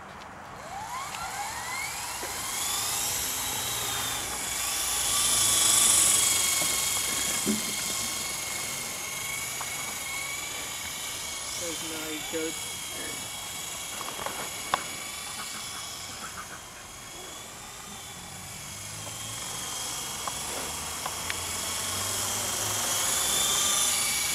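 Esky Honeybee CP2 electric RC helicopter spinning up: a high whine rises over the first few seconds. It then holds a steady, slightly wavering whine as the helicopter flies, loudest a few seconds in.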